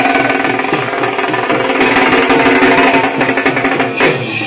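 Dhak drums beaten with sticks in a fast, dense beat, loud, with a steady ringing tone sounding above the drumming.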